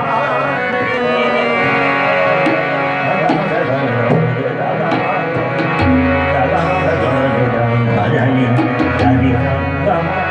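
Live ghazal music: a male voice singing with gliding, ornamented lines over held harmonium notes, accompanied by tabla. Deep bass strokes from the tabla's bayan come in strongly about six seconds in.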